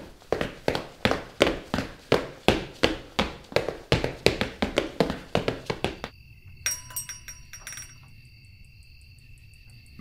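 Hurried footsteps, about three sharp steps a second, for the first six seconds. Then they stop and crickets chirp steadily at a lower level.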